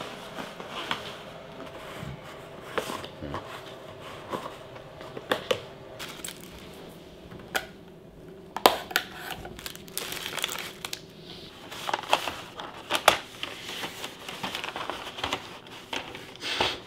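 Disposable takeout breakfast containers being opened and handled: a plastic clamshell lid and paper food boxes with plastic windows crinkling, with irregular sharp clicks and taps, the loudest about halfway through and again near three-quarters of the way, over a faint steady hum.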